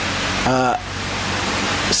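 A steady, loud hiss of noise with a faint low hum beneath it; a man's voice says one short syllable about half a second in.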